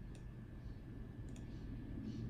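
A faint click, then a quick double click about a second later, over a steady low hum.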